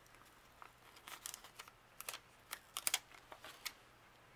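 A clear sticker being peeled off its backing sheet and laid onto a paper planner page: a run of light crackles and ticks starting about a second in, thickest in the second half and stopping shortly before the end.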